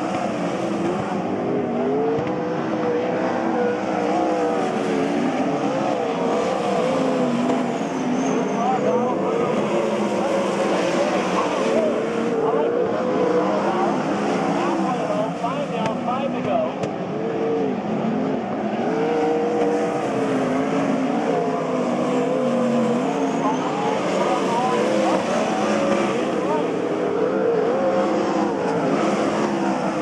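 Several winged sprint cars' V8 engines running at low revs, the pitch wavering up and down as the throttles are blipped.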